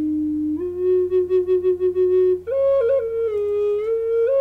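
Native American-style wooden flute playing a slow, low melody: a held note steps up and pulses about five times a second, then about halfway through jumps higher with a quick grace note, settles lower and rises again near the end.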